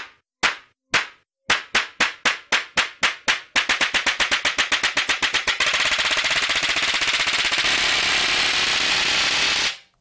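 Cartoon slap sound effects, repeated and speeding up from about two a second into a rapid, unbroken stream of slaps that stops suddenly near the end.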